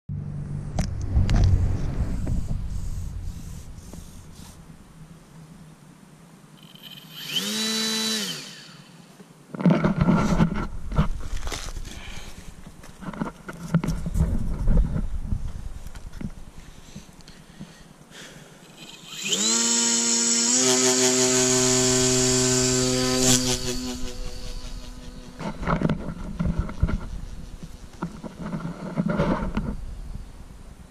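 Small electric motor and propeller of a Graupner Nancy glider converted to radio control, run up twice with a rising whine: a short burst about seven seconds in, then a longer run from about nineteen seconds that rises, holds steady for a few seconds and cuts off. Low rumbling noise on the microphone fills the gaps.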